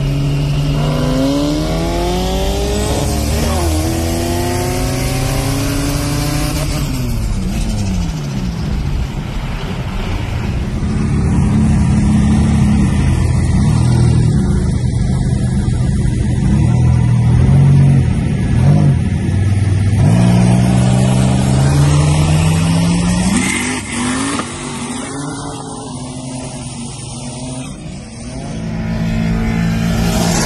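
Skid car's engine revving hard, heard from inside the cabin: the note climbs and falls repeatedly, holds high and steady for several seconds in the middle, and drops back briefly near the end.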